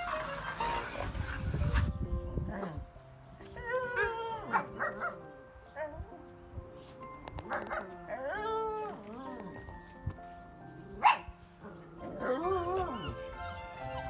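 Hokkaido dogs: a noisy scuffle of two dogs at play for about two seconds, then three bouts of drawn-out whining howls that rise and fall in pitch, with a single sharp bark about eleven seconds in, over light background music.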